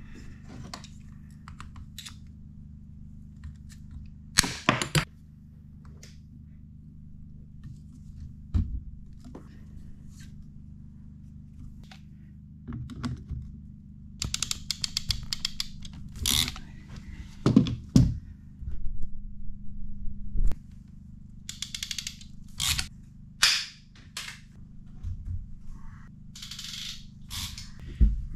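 Plumbing work on a 12-volt water pressure pump: PEX tubing being fitted and clamped, heard as scattered clicks and knocks with a quick run of clicks from the clamp tool about halfway through. A steady low hum runs underneath.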